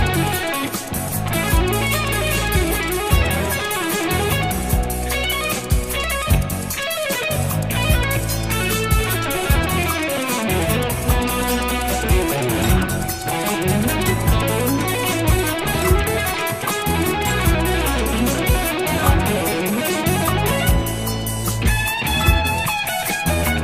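Stratocaster-style electric guitar played in fast single-note lines, over a steady accompaniment with low bass notes and regular ticking percussion.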